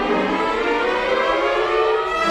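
Symphony orchestra playing, strings and winds holding sustained notes.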